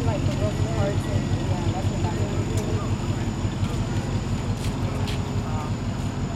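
Vehicle engines rumbling with an even, pulsing beat, under faint talk from people nearby.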